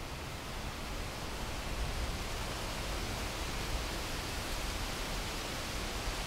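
Steady wind noise in the woods: an even hiss with a low rumble of wind on the microphone, rising slightly about a second in and holding.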